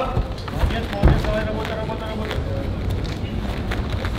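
Fight-hall sound of indistinct shouting voices and crowd noise, with a heavy thud about a second in and a few sharper knocks after it as two fighters grapple clinched against the cage fence.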